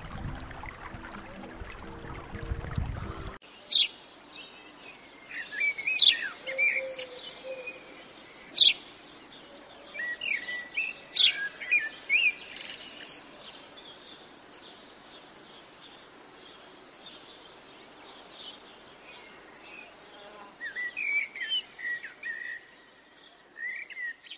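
Songbirds chirping and calling, in short sharp notes that cluster in busy stretches and again near the end. For the first three seconds or so, held musical tones play, then cut off suddenly.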